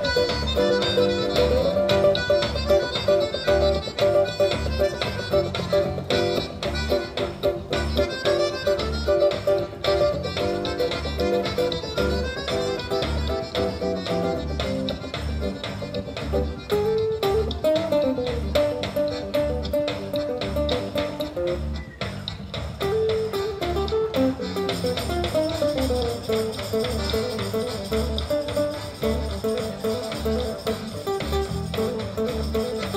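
Instrumental passage of a live folk quartet: accordion, acoustic guitar and electric bass guitar play together, with the bass keeping a steady pulse under the melody.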